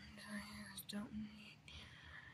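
A soft voice holding a hummed note that trails off less than a second in, followed by faint whispering.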